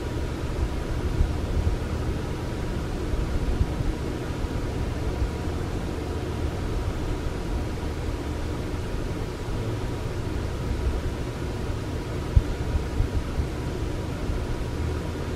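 Steady background room noise: a low hum with a hiss over it and a faint steady tone, no other sound.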